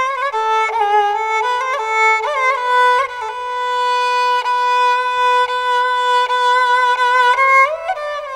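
Politiki lyra, the Constantinopolitan bowed lyra, playing a slow, ornamented melody with slides between notes, holding one long note through the middle.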